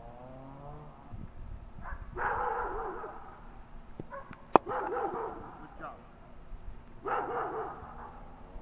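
A cricket bat striking a ball once, a sharp crack about halfway through. Three short calls are heard around it, one before the crack and two after.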